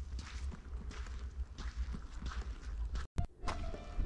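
Faint footsteps of someone walking outdoors over a steady low rumble, cutting out briefly about three seconds in.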